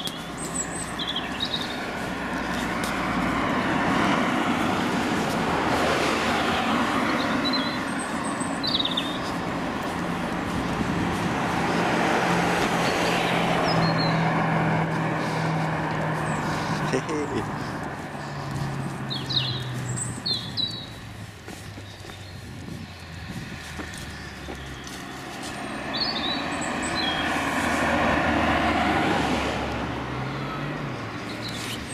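Road traffic: cars passing by, their tyre and engine noise swelling and fading about three times. Small birds chirp briefly now and then.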